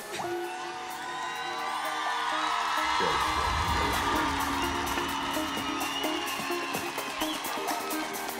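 Live pop band playing a slow song intro of held chords, with deep bass coming in about three seconds in, over an arena crowd cheering and whooping that swells through the middle.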